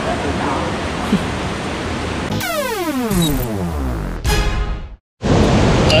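Steady rush of the cave river's water with faint voices. About two seconds in comes a falling tone with several overtones that slides down over about two seconds, like an editing sound effect, then a short burst and a brief drop to silence at the cut about five seconds in.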